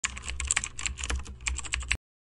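Rapid, irregular keyboard typing clicks over a low hum, cutting off suddenly at the end.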